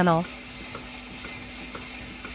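Robotic milking unit running under a cow: a steady hiss of vacuum and air with a low hum and faint regular clicks about twice a second.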